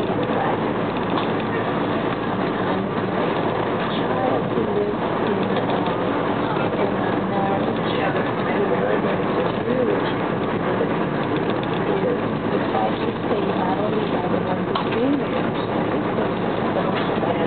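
Steady running noise of an electric commuter train heard from inside the passenger car, wheels on the rails at speed, with faint voices mixed in.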